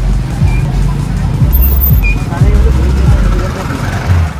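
Loud, bass-heavy dance music from a party sound system, heard mostly as deep held bass notes and steady kick-drum thuds with little treble, under the chatter of people nearby.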